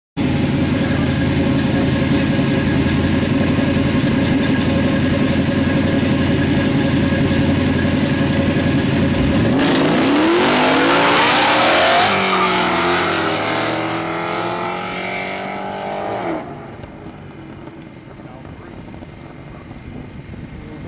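A performance Camaro's engine runs steadily at the start line. About halfway through it launches, its revs climbing in quick rising sweeps through the gears as it accelerates away, and the sound fades with distance before dropping off sharply near the end.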